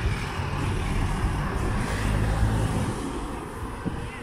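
Road traffic: a motor vehicle's engine passing close by, swelling to its loudest about two seconds in and then easing off.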